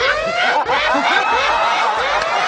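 Judges laughing: several overlapping chuckles and snickers.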